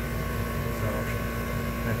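A heat-pump unit's compressor and ECM blower fan running in second stage, a steady hum with a few fixed tones.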